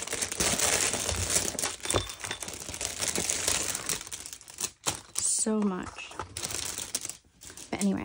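Wrapping crinkling and rustling as a gift is unwrapped by hand, with a few light knocks as things are handled and set down. The rustling stops about two-thirds in, and a short vocal sound follows.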